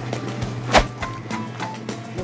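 Cartoon mechanical sound effects for a round, washing-machine-like appliance: light clicking and ratcheting with one sharp knock a little under a second in, over background music.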